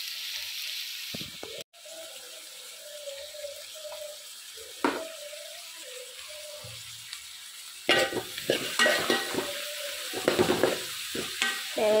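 Chopped shallots, coconut pieces and curry leaves sizzling in oil in a metal pan, with a spatula scraping and stirring them in quick strokes from about two-thirds of the way in.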